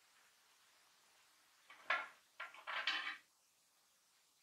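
Metal rings of a dreamcatcher frame knocking and rattling as the frame is handled: one sharp knock about halfway through, then a brief clatter of several quick knocks, over in about a second and a half.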